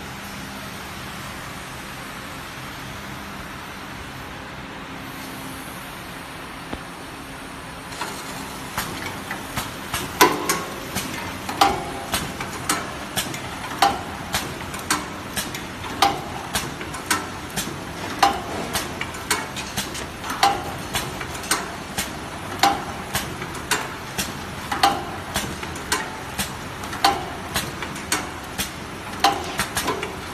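Automatic cellophane (BOPP film) overwrapping machine for small boxes running: a steady mechanical hum, then, about eight seconds in, a regular clatter of clicks with a louder clack about once a second as the mechanism cycles.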